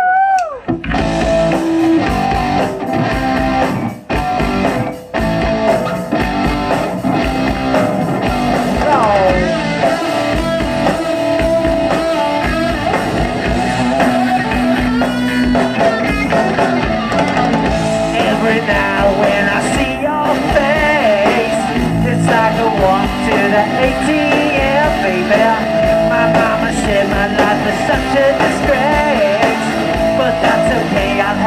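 Live punk rock band launching into a song about half a second in, with electric guitar, bass and a voice singing, and brief breaks a few seconds in.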